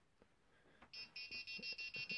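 Arduino-driven piezo speaker beeping rapidly, about seven short high-pitched beeps a second, starting about a second in. It is the reminder alarm set off by a person passing the second ultrasonic sensor while the wallet is still in front of the first.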